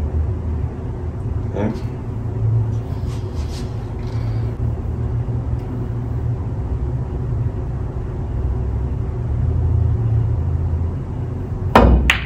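Steady low rumble of room noise. Near the end comes one sharp click: the cue tip striking the cue ball on a draw shot.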